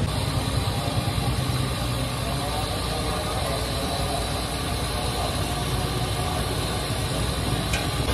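A steady low rumble with a hiss over it, even and unchanging, with no distinct knocks or events.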